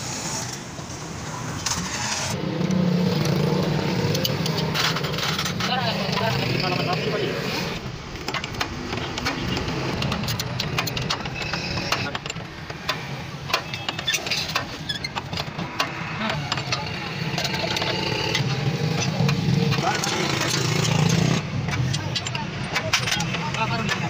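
Workshop noise: a motor-vehicle engine running with a steady hum that swells and fades, sharp metallic clicks and clinks of tools on the suspension, and people talking.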